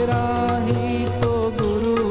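Hindi devotional bhajan: a man singing a wavering melody over instrumental accompaniment with a steady percussion beat.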